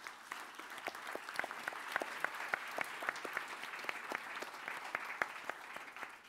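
Audience applauding, a dense spread of many hands clapping that swells over the first second, holds, and thins out near the end.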